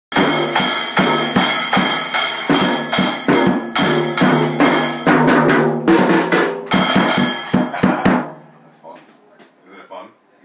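A child's Schoenhut junior drum kit played fast: rapid strikes on the drums, several a second, under a ringing cymbal, stopping about eight seconds in.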